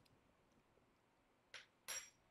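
Near silence, then two short soft sounds near the end: a sip of broth slurped from a tasting spoon.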